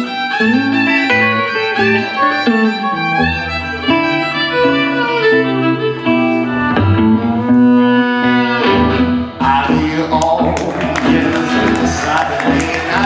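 Live blues played on violin and electric guitar, the bowed violin carrying a melody over the guitar backing. Low notes come in about three seconds in, and sharp rhythmic hits fill out the sound near the end.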